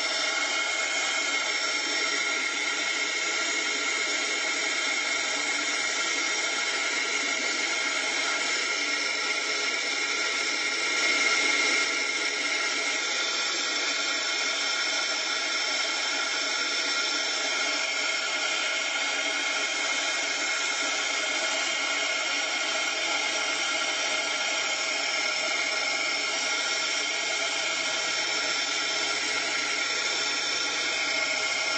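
Handheld craft heat tool blowing hot air to dry wet watercolour paint: a steady fan whine over rushing air, briefly a little louder about eleven seconds in.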